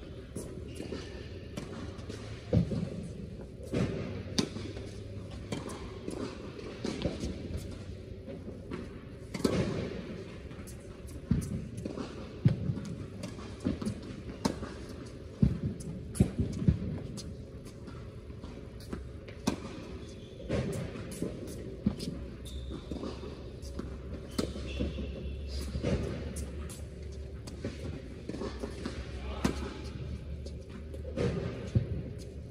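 Tennis balls struck by racquets and bouncing on a hard court in a rally, a string of irregular sharp pops, echoing in a large indoor hall.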